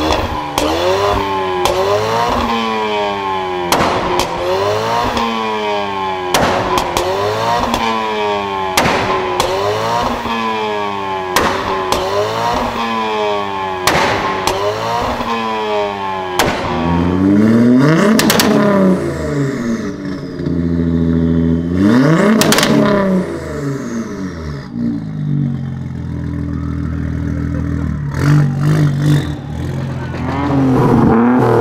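Ford Mustang's exhaust as the engine is blipped over and over, a quick rise and fall in revs about every two and a half seconds, each rev with a sharp bang. About halfway through come two longer, higher revs, and then the engine settles to a steady idle.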